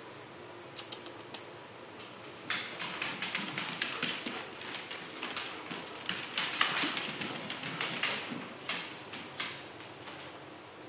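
A puppy chewing and gnawing, probably on a toy: a few separate clicks about a second in, then a dense run of irregular crunches and clicks from a couple of seconds in until near the end.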